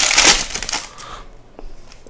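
Foil trading-card pack wrapper crinkling as it is torn open and the cards are pulled out. It is loudest in about the first second, then drops to faint rustling and a few small clicks.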